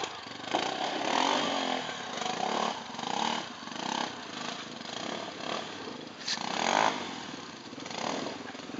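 Off-road trail motorcycle engine revved in repeated bursts, swelling and easing about once a second, as the bike climbs a rocky trail and pulls away.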